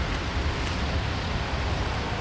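Steady rumbling noise of wind on the microphone and traffic, with no distinct event standing out.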